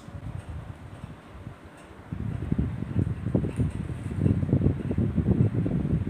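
Low, fluctuating rumble of moving air buffeting a clip-on microphone, growing louder about two seconds in.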